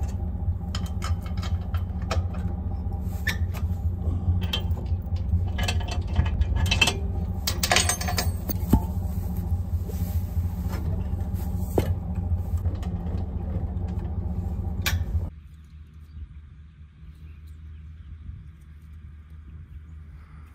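Pickup truck engine idling steadily while a bumper-pull trailer is unhitched, with sharp metal clinks and rattles from the coupler pin, latch and safety chains. Engine and clinking stop abruptly about fifteen seconds in, leaving a much quieter low background.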